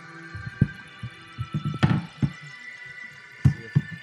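Irregular low thumps and bumps from a handheld microphone held against a man's belly as he shakes it, trying to catch the slosh of liquid inside, with two sharper clicks, over steady background music.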